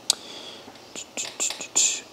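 A single click, then a man's soft whispered muttering with short hissing sounds.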